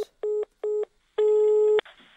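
Telephone line tones heard down the line: two short busy-signal beeps on one steady pitch, then a longer tone of the same pitch that cuts off with a click.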